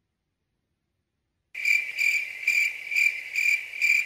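Complete silence for about a second and a half, then crickets chirping: a high, steady trill pulsing about twice a second. It is the stock 'crickets' sound effect for an awkward silence when a question gets no answer.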